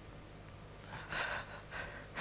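A woman crying: two short, breathy sobbing gasps about a second in, after a moment of quiet.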